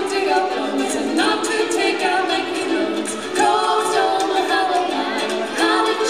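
Voices singing a children's folk song live, over a strummed ukulele.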